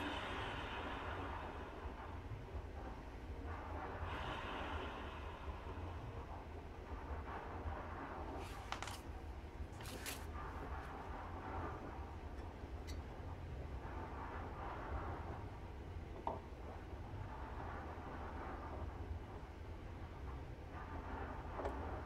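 Steady low background hum with light rustling and handling noise from metal CVT parts of a scooter transmission being held up and fitted by hand, including a few short scrapes about halfway through.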